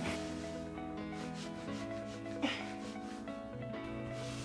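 Sticky lint roller rubbing across a fabric duvet cover in short strokes, the sharpest one about two and a half seconds in, over soft background music.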